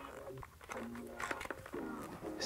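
Faint clicks and light handling of a plastic cam-lock chinstrap clip and thumb screw being fitted into a Riddell SpeedFlex football helmet shell by hand.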